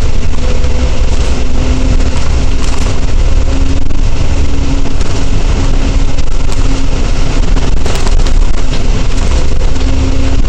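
Volvo B10TL double-decker bus with a Volvo D10A 9.6-litre diesel engine running at steady speed, heard from inside on the upper deck: a loud continuous low rumble of engine and road with a steady whining tone over it.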